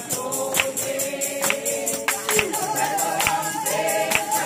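A congregation singing a gospel song together, with a steady beat struck a little more than once a second.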